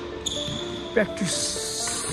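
A badminton racket strikes a shuttlecock once, a sharp crack about a second in, during a rally. A player shouts at the same moment, over background music.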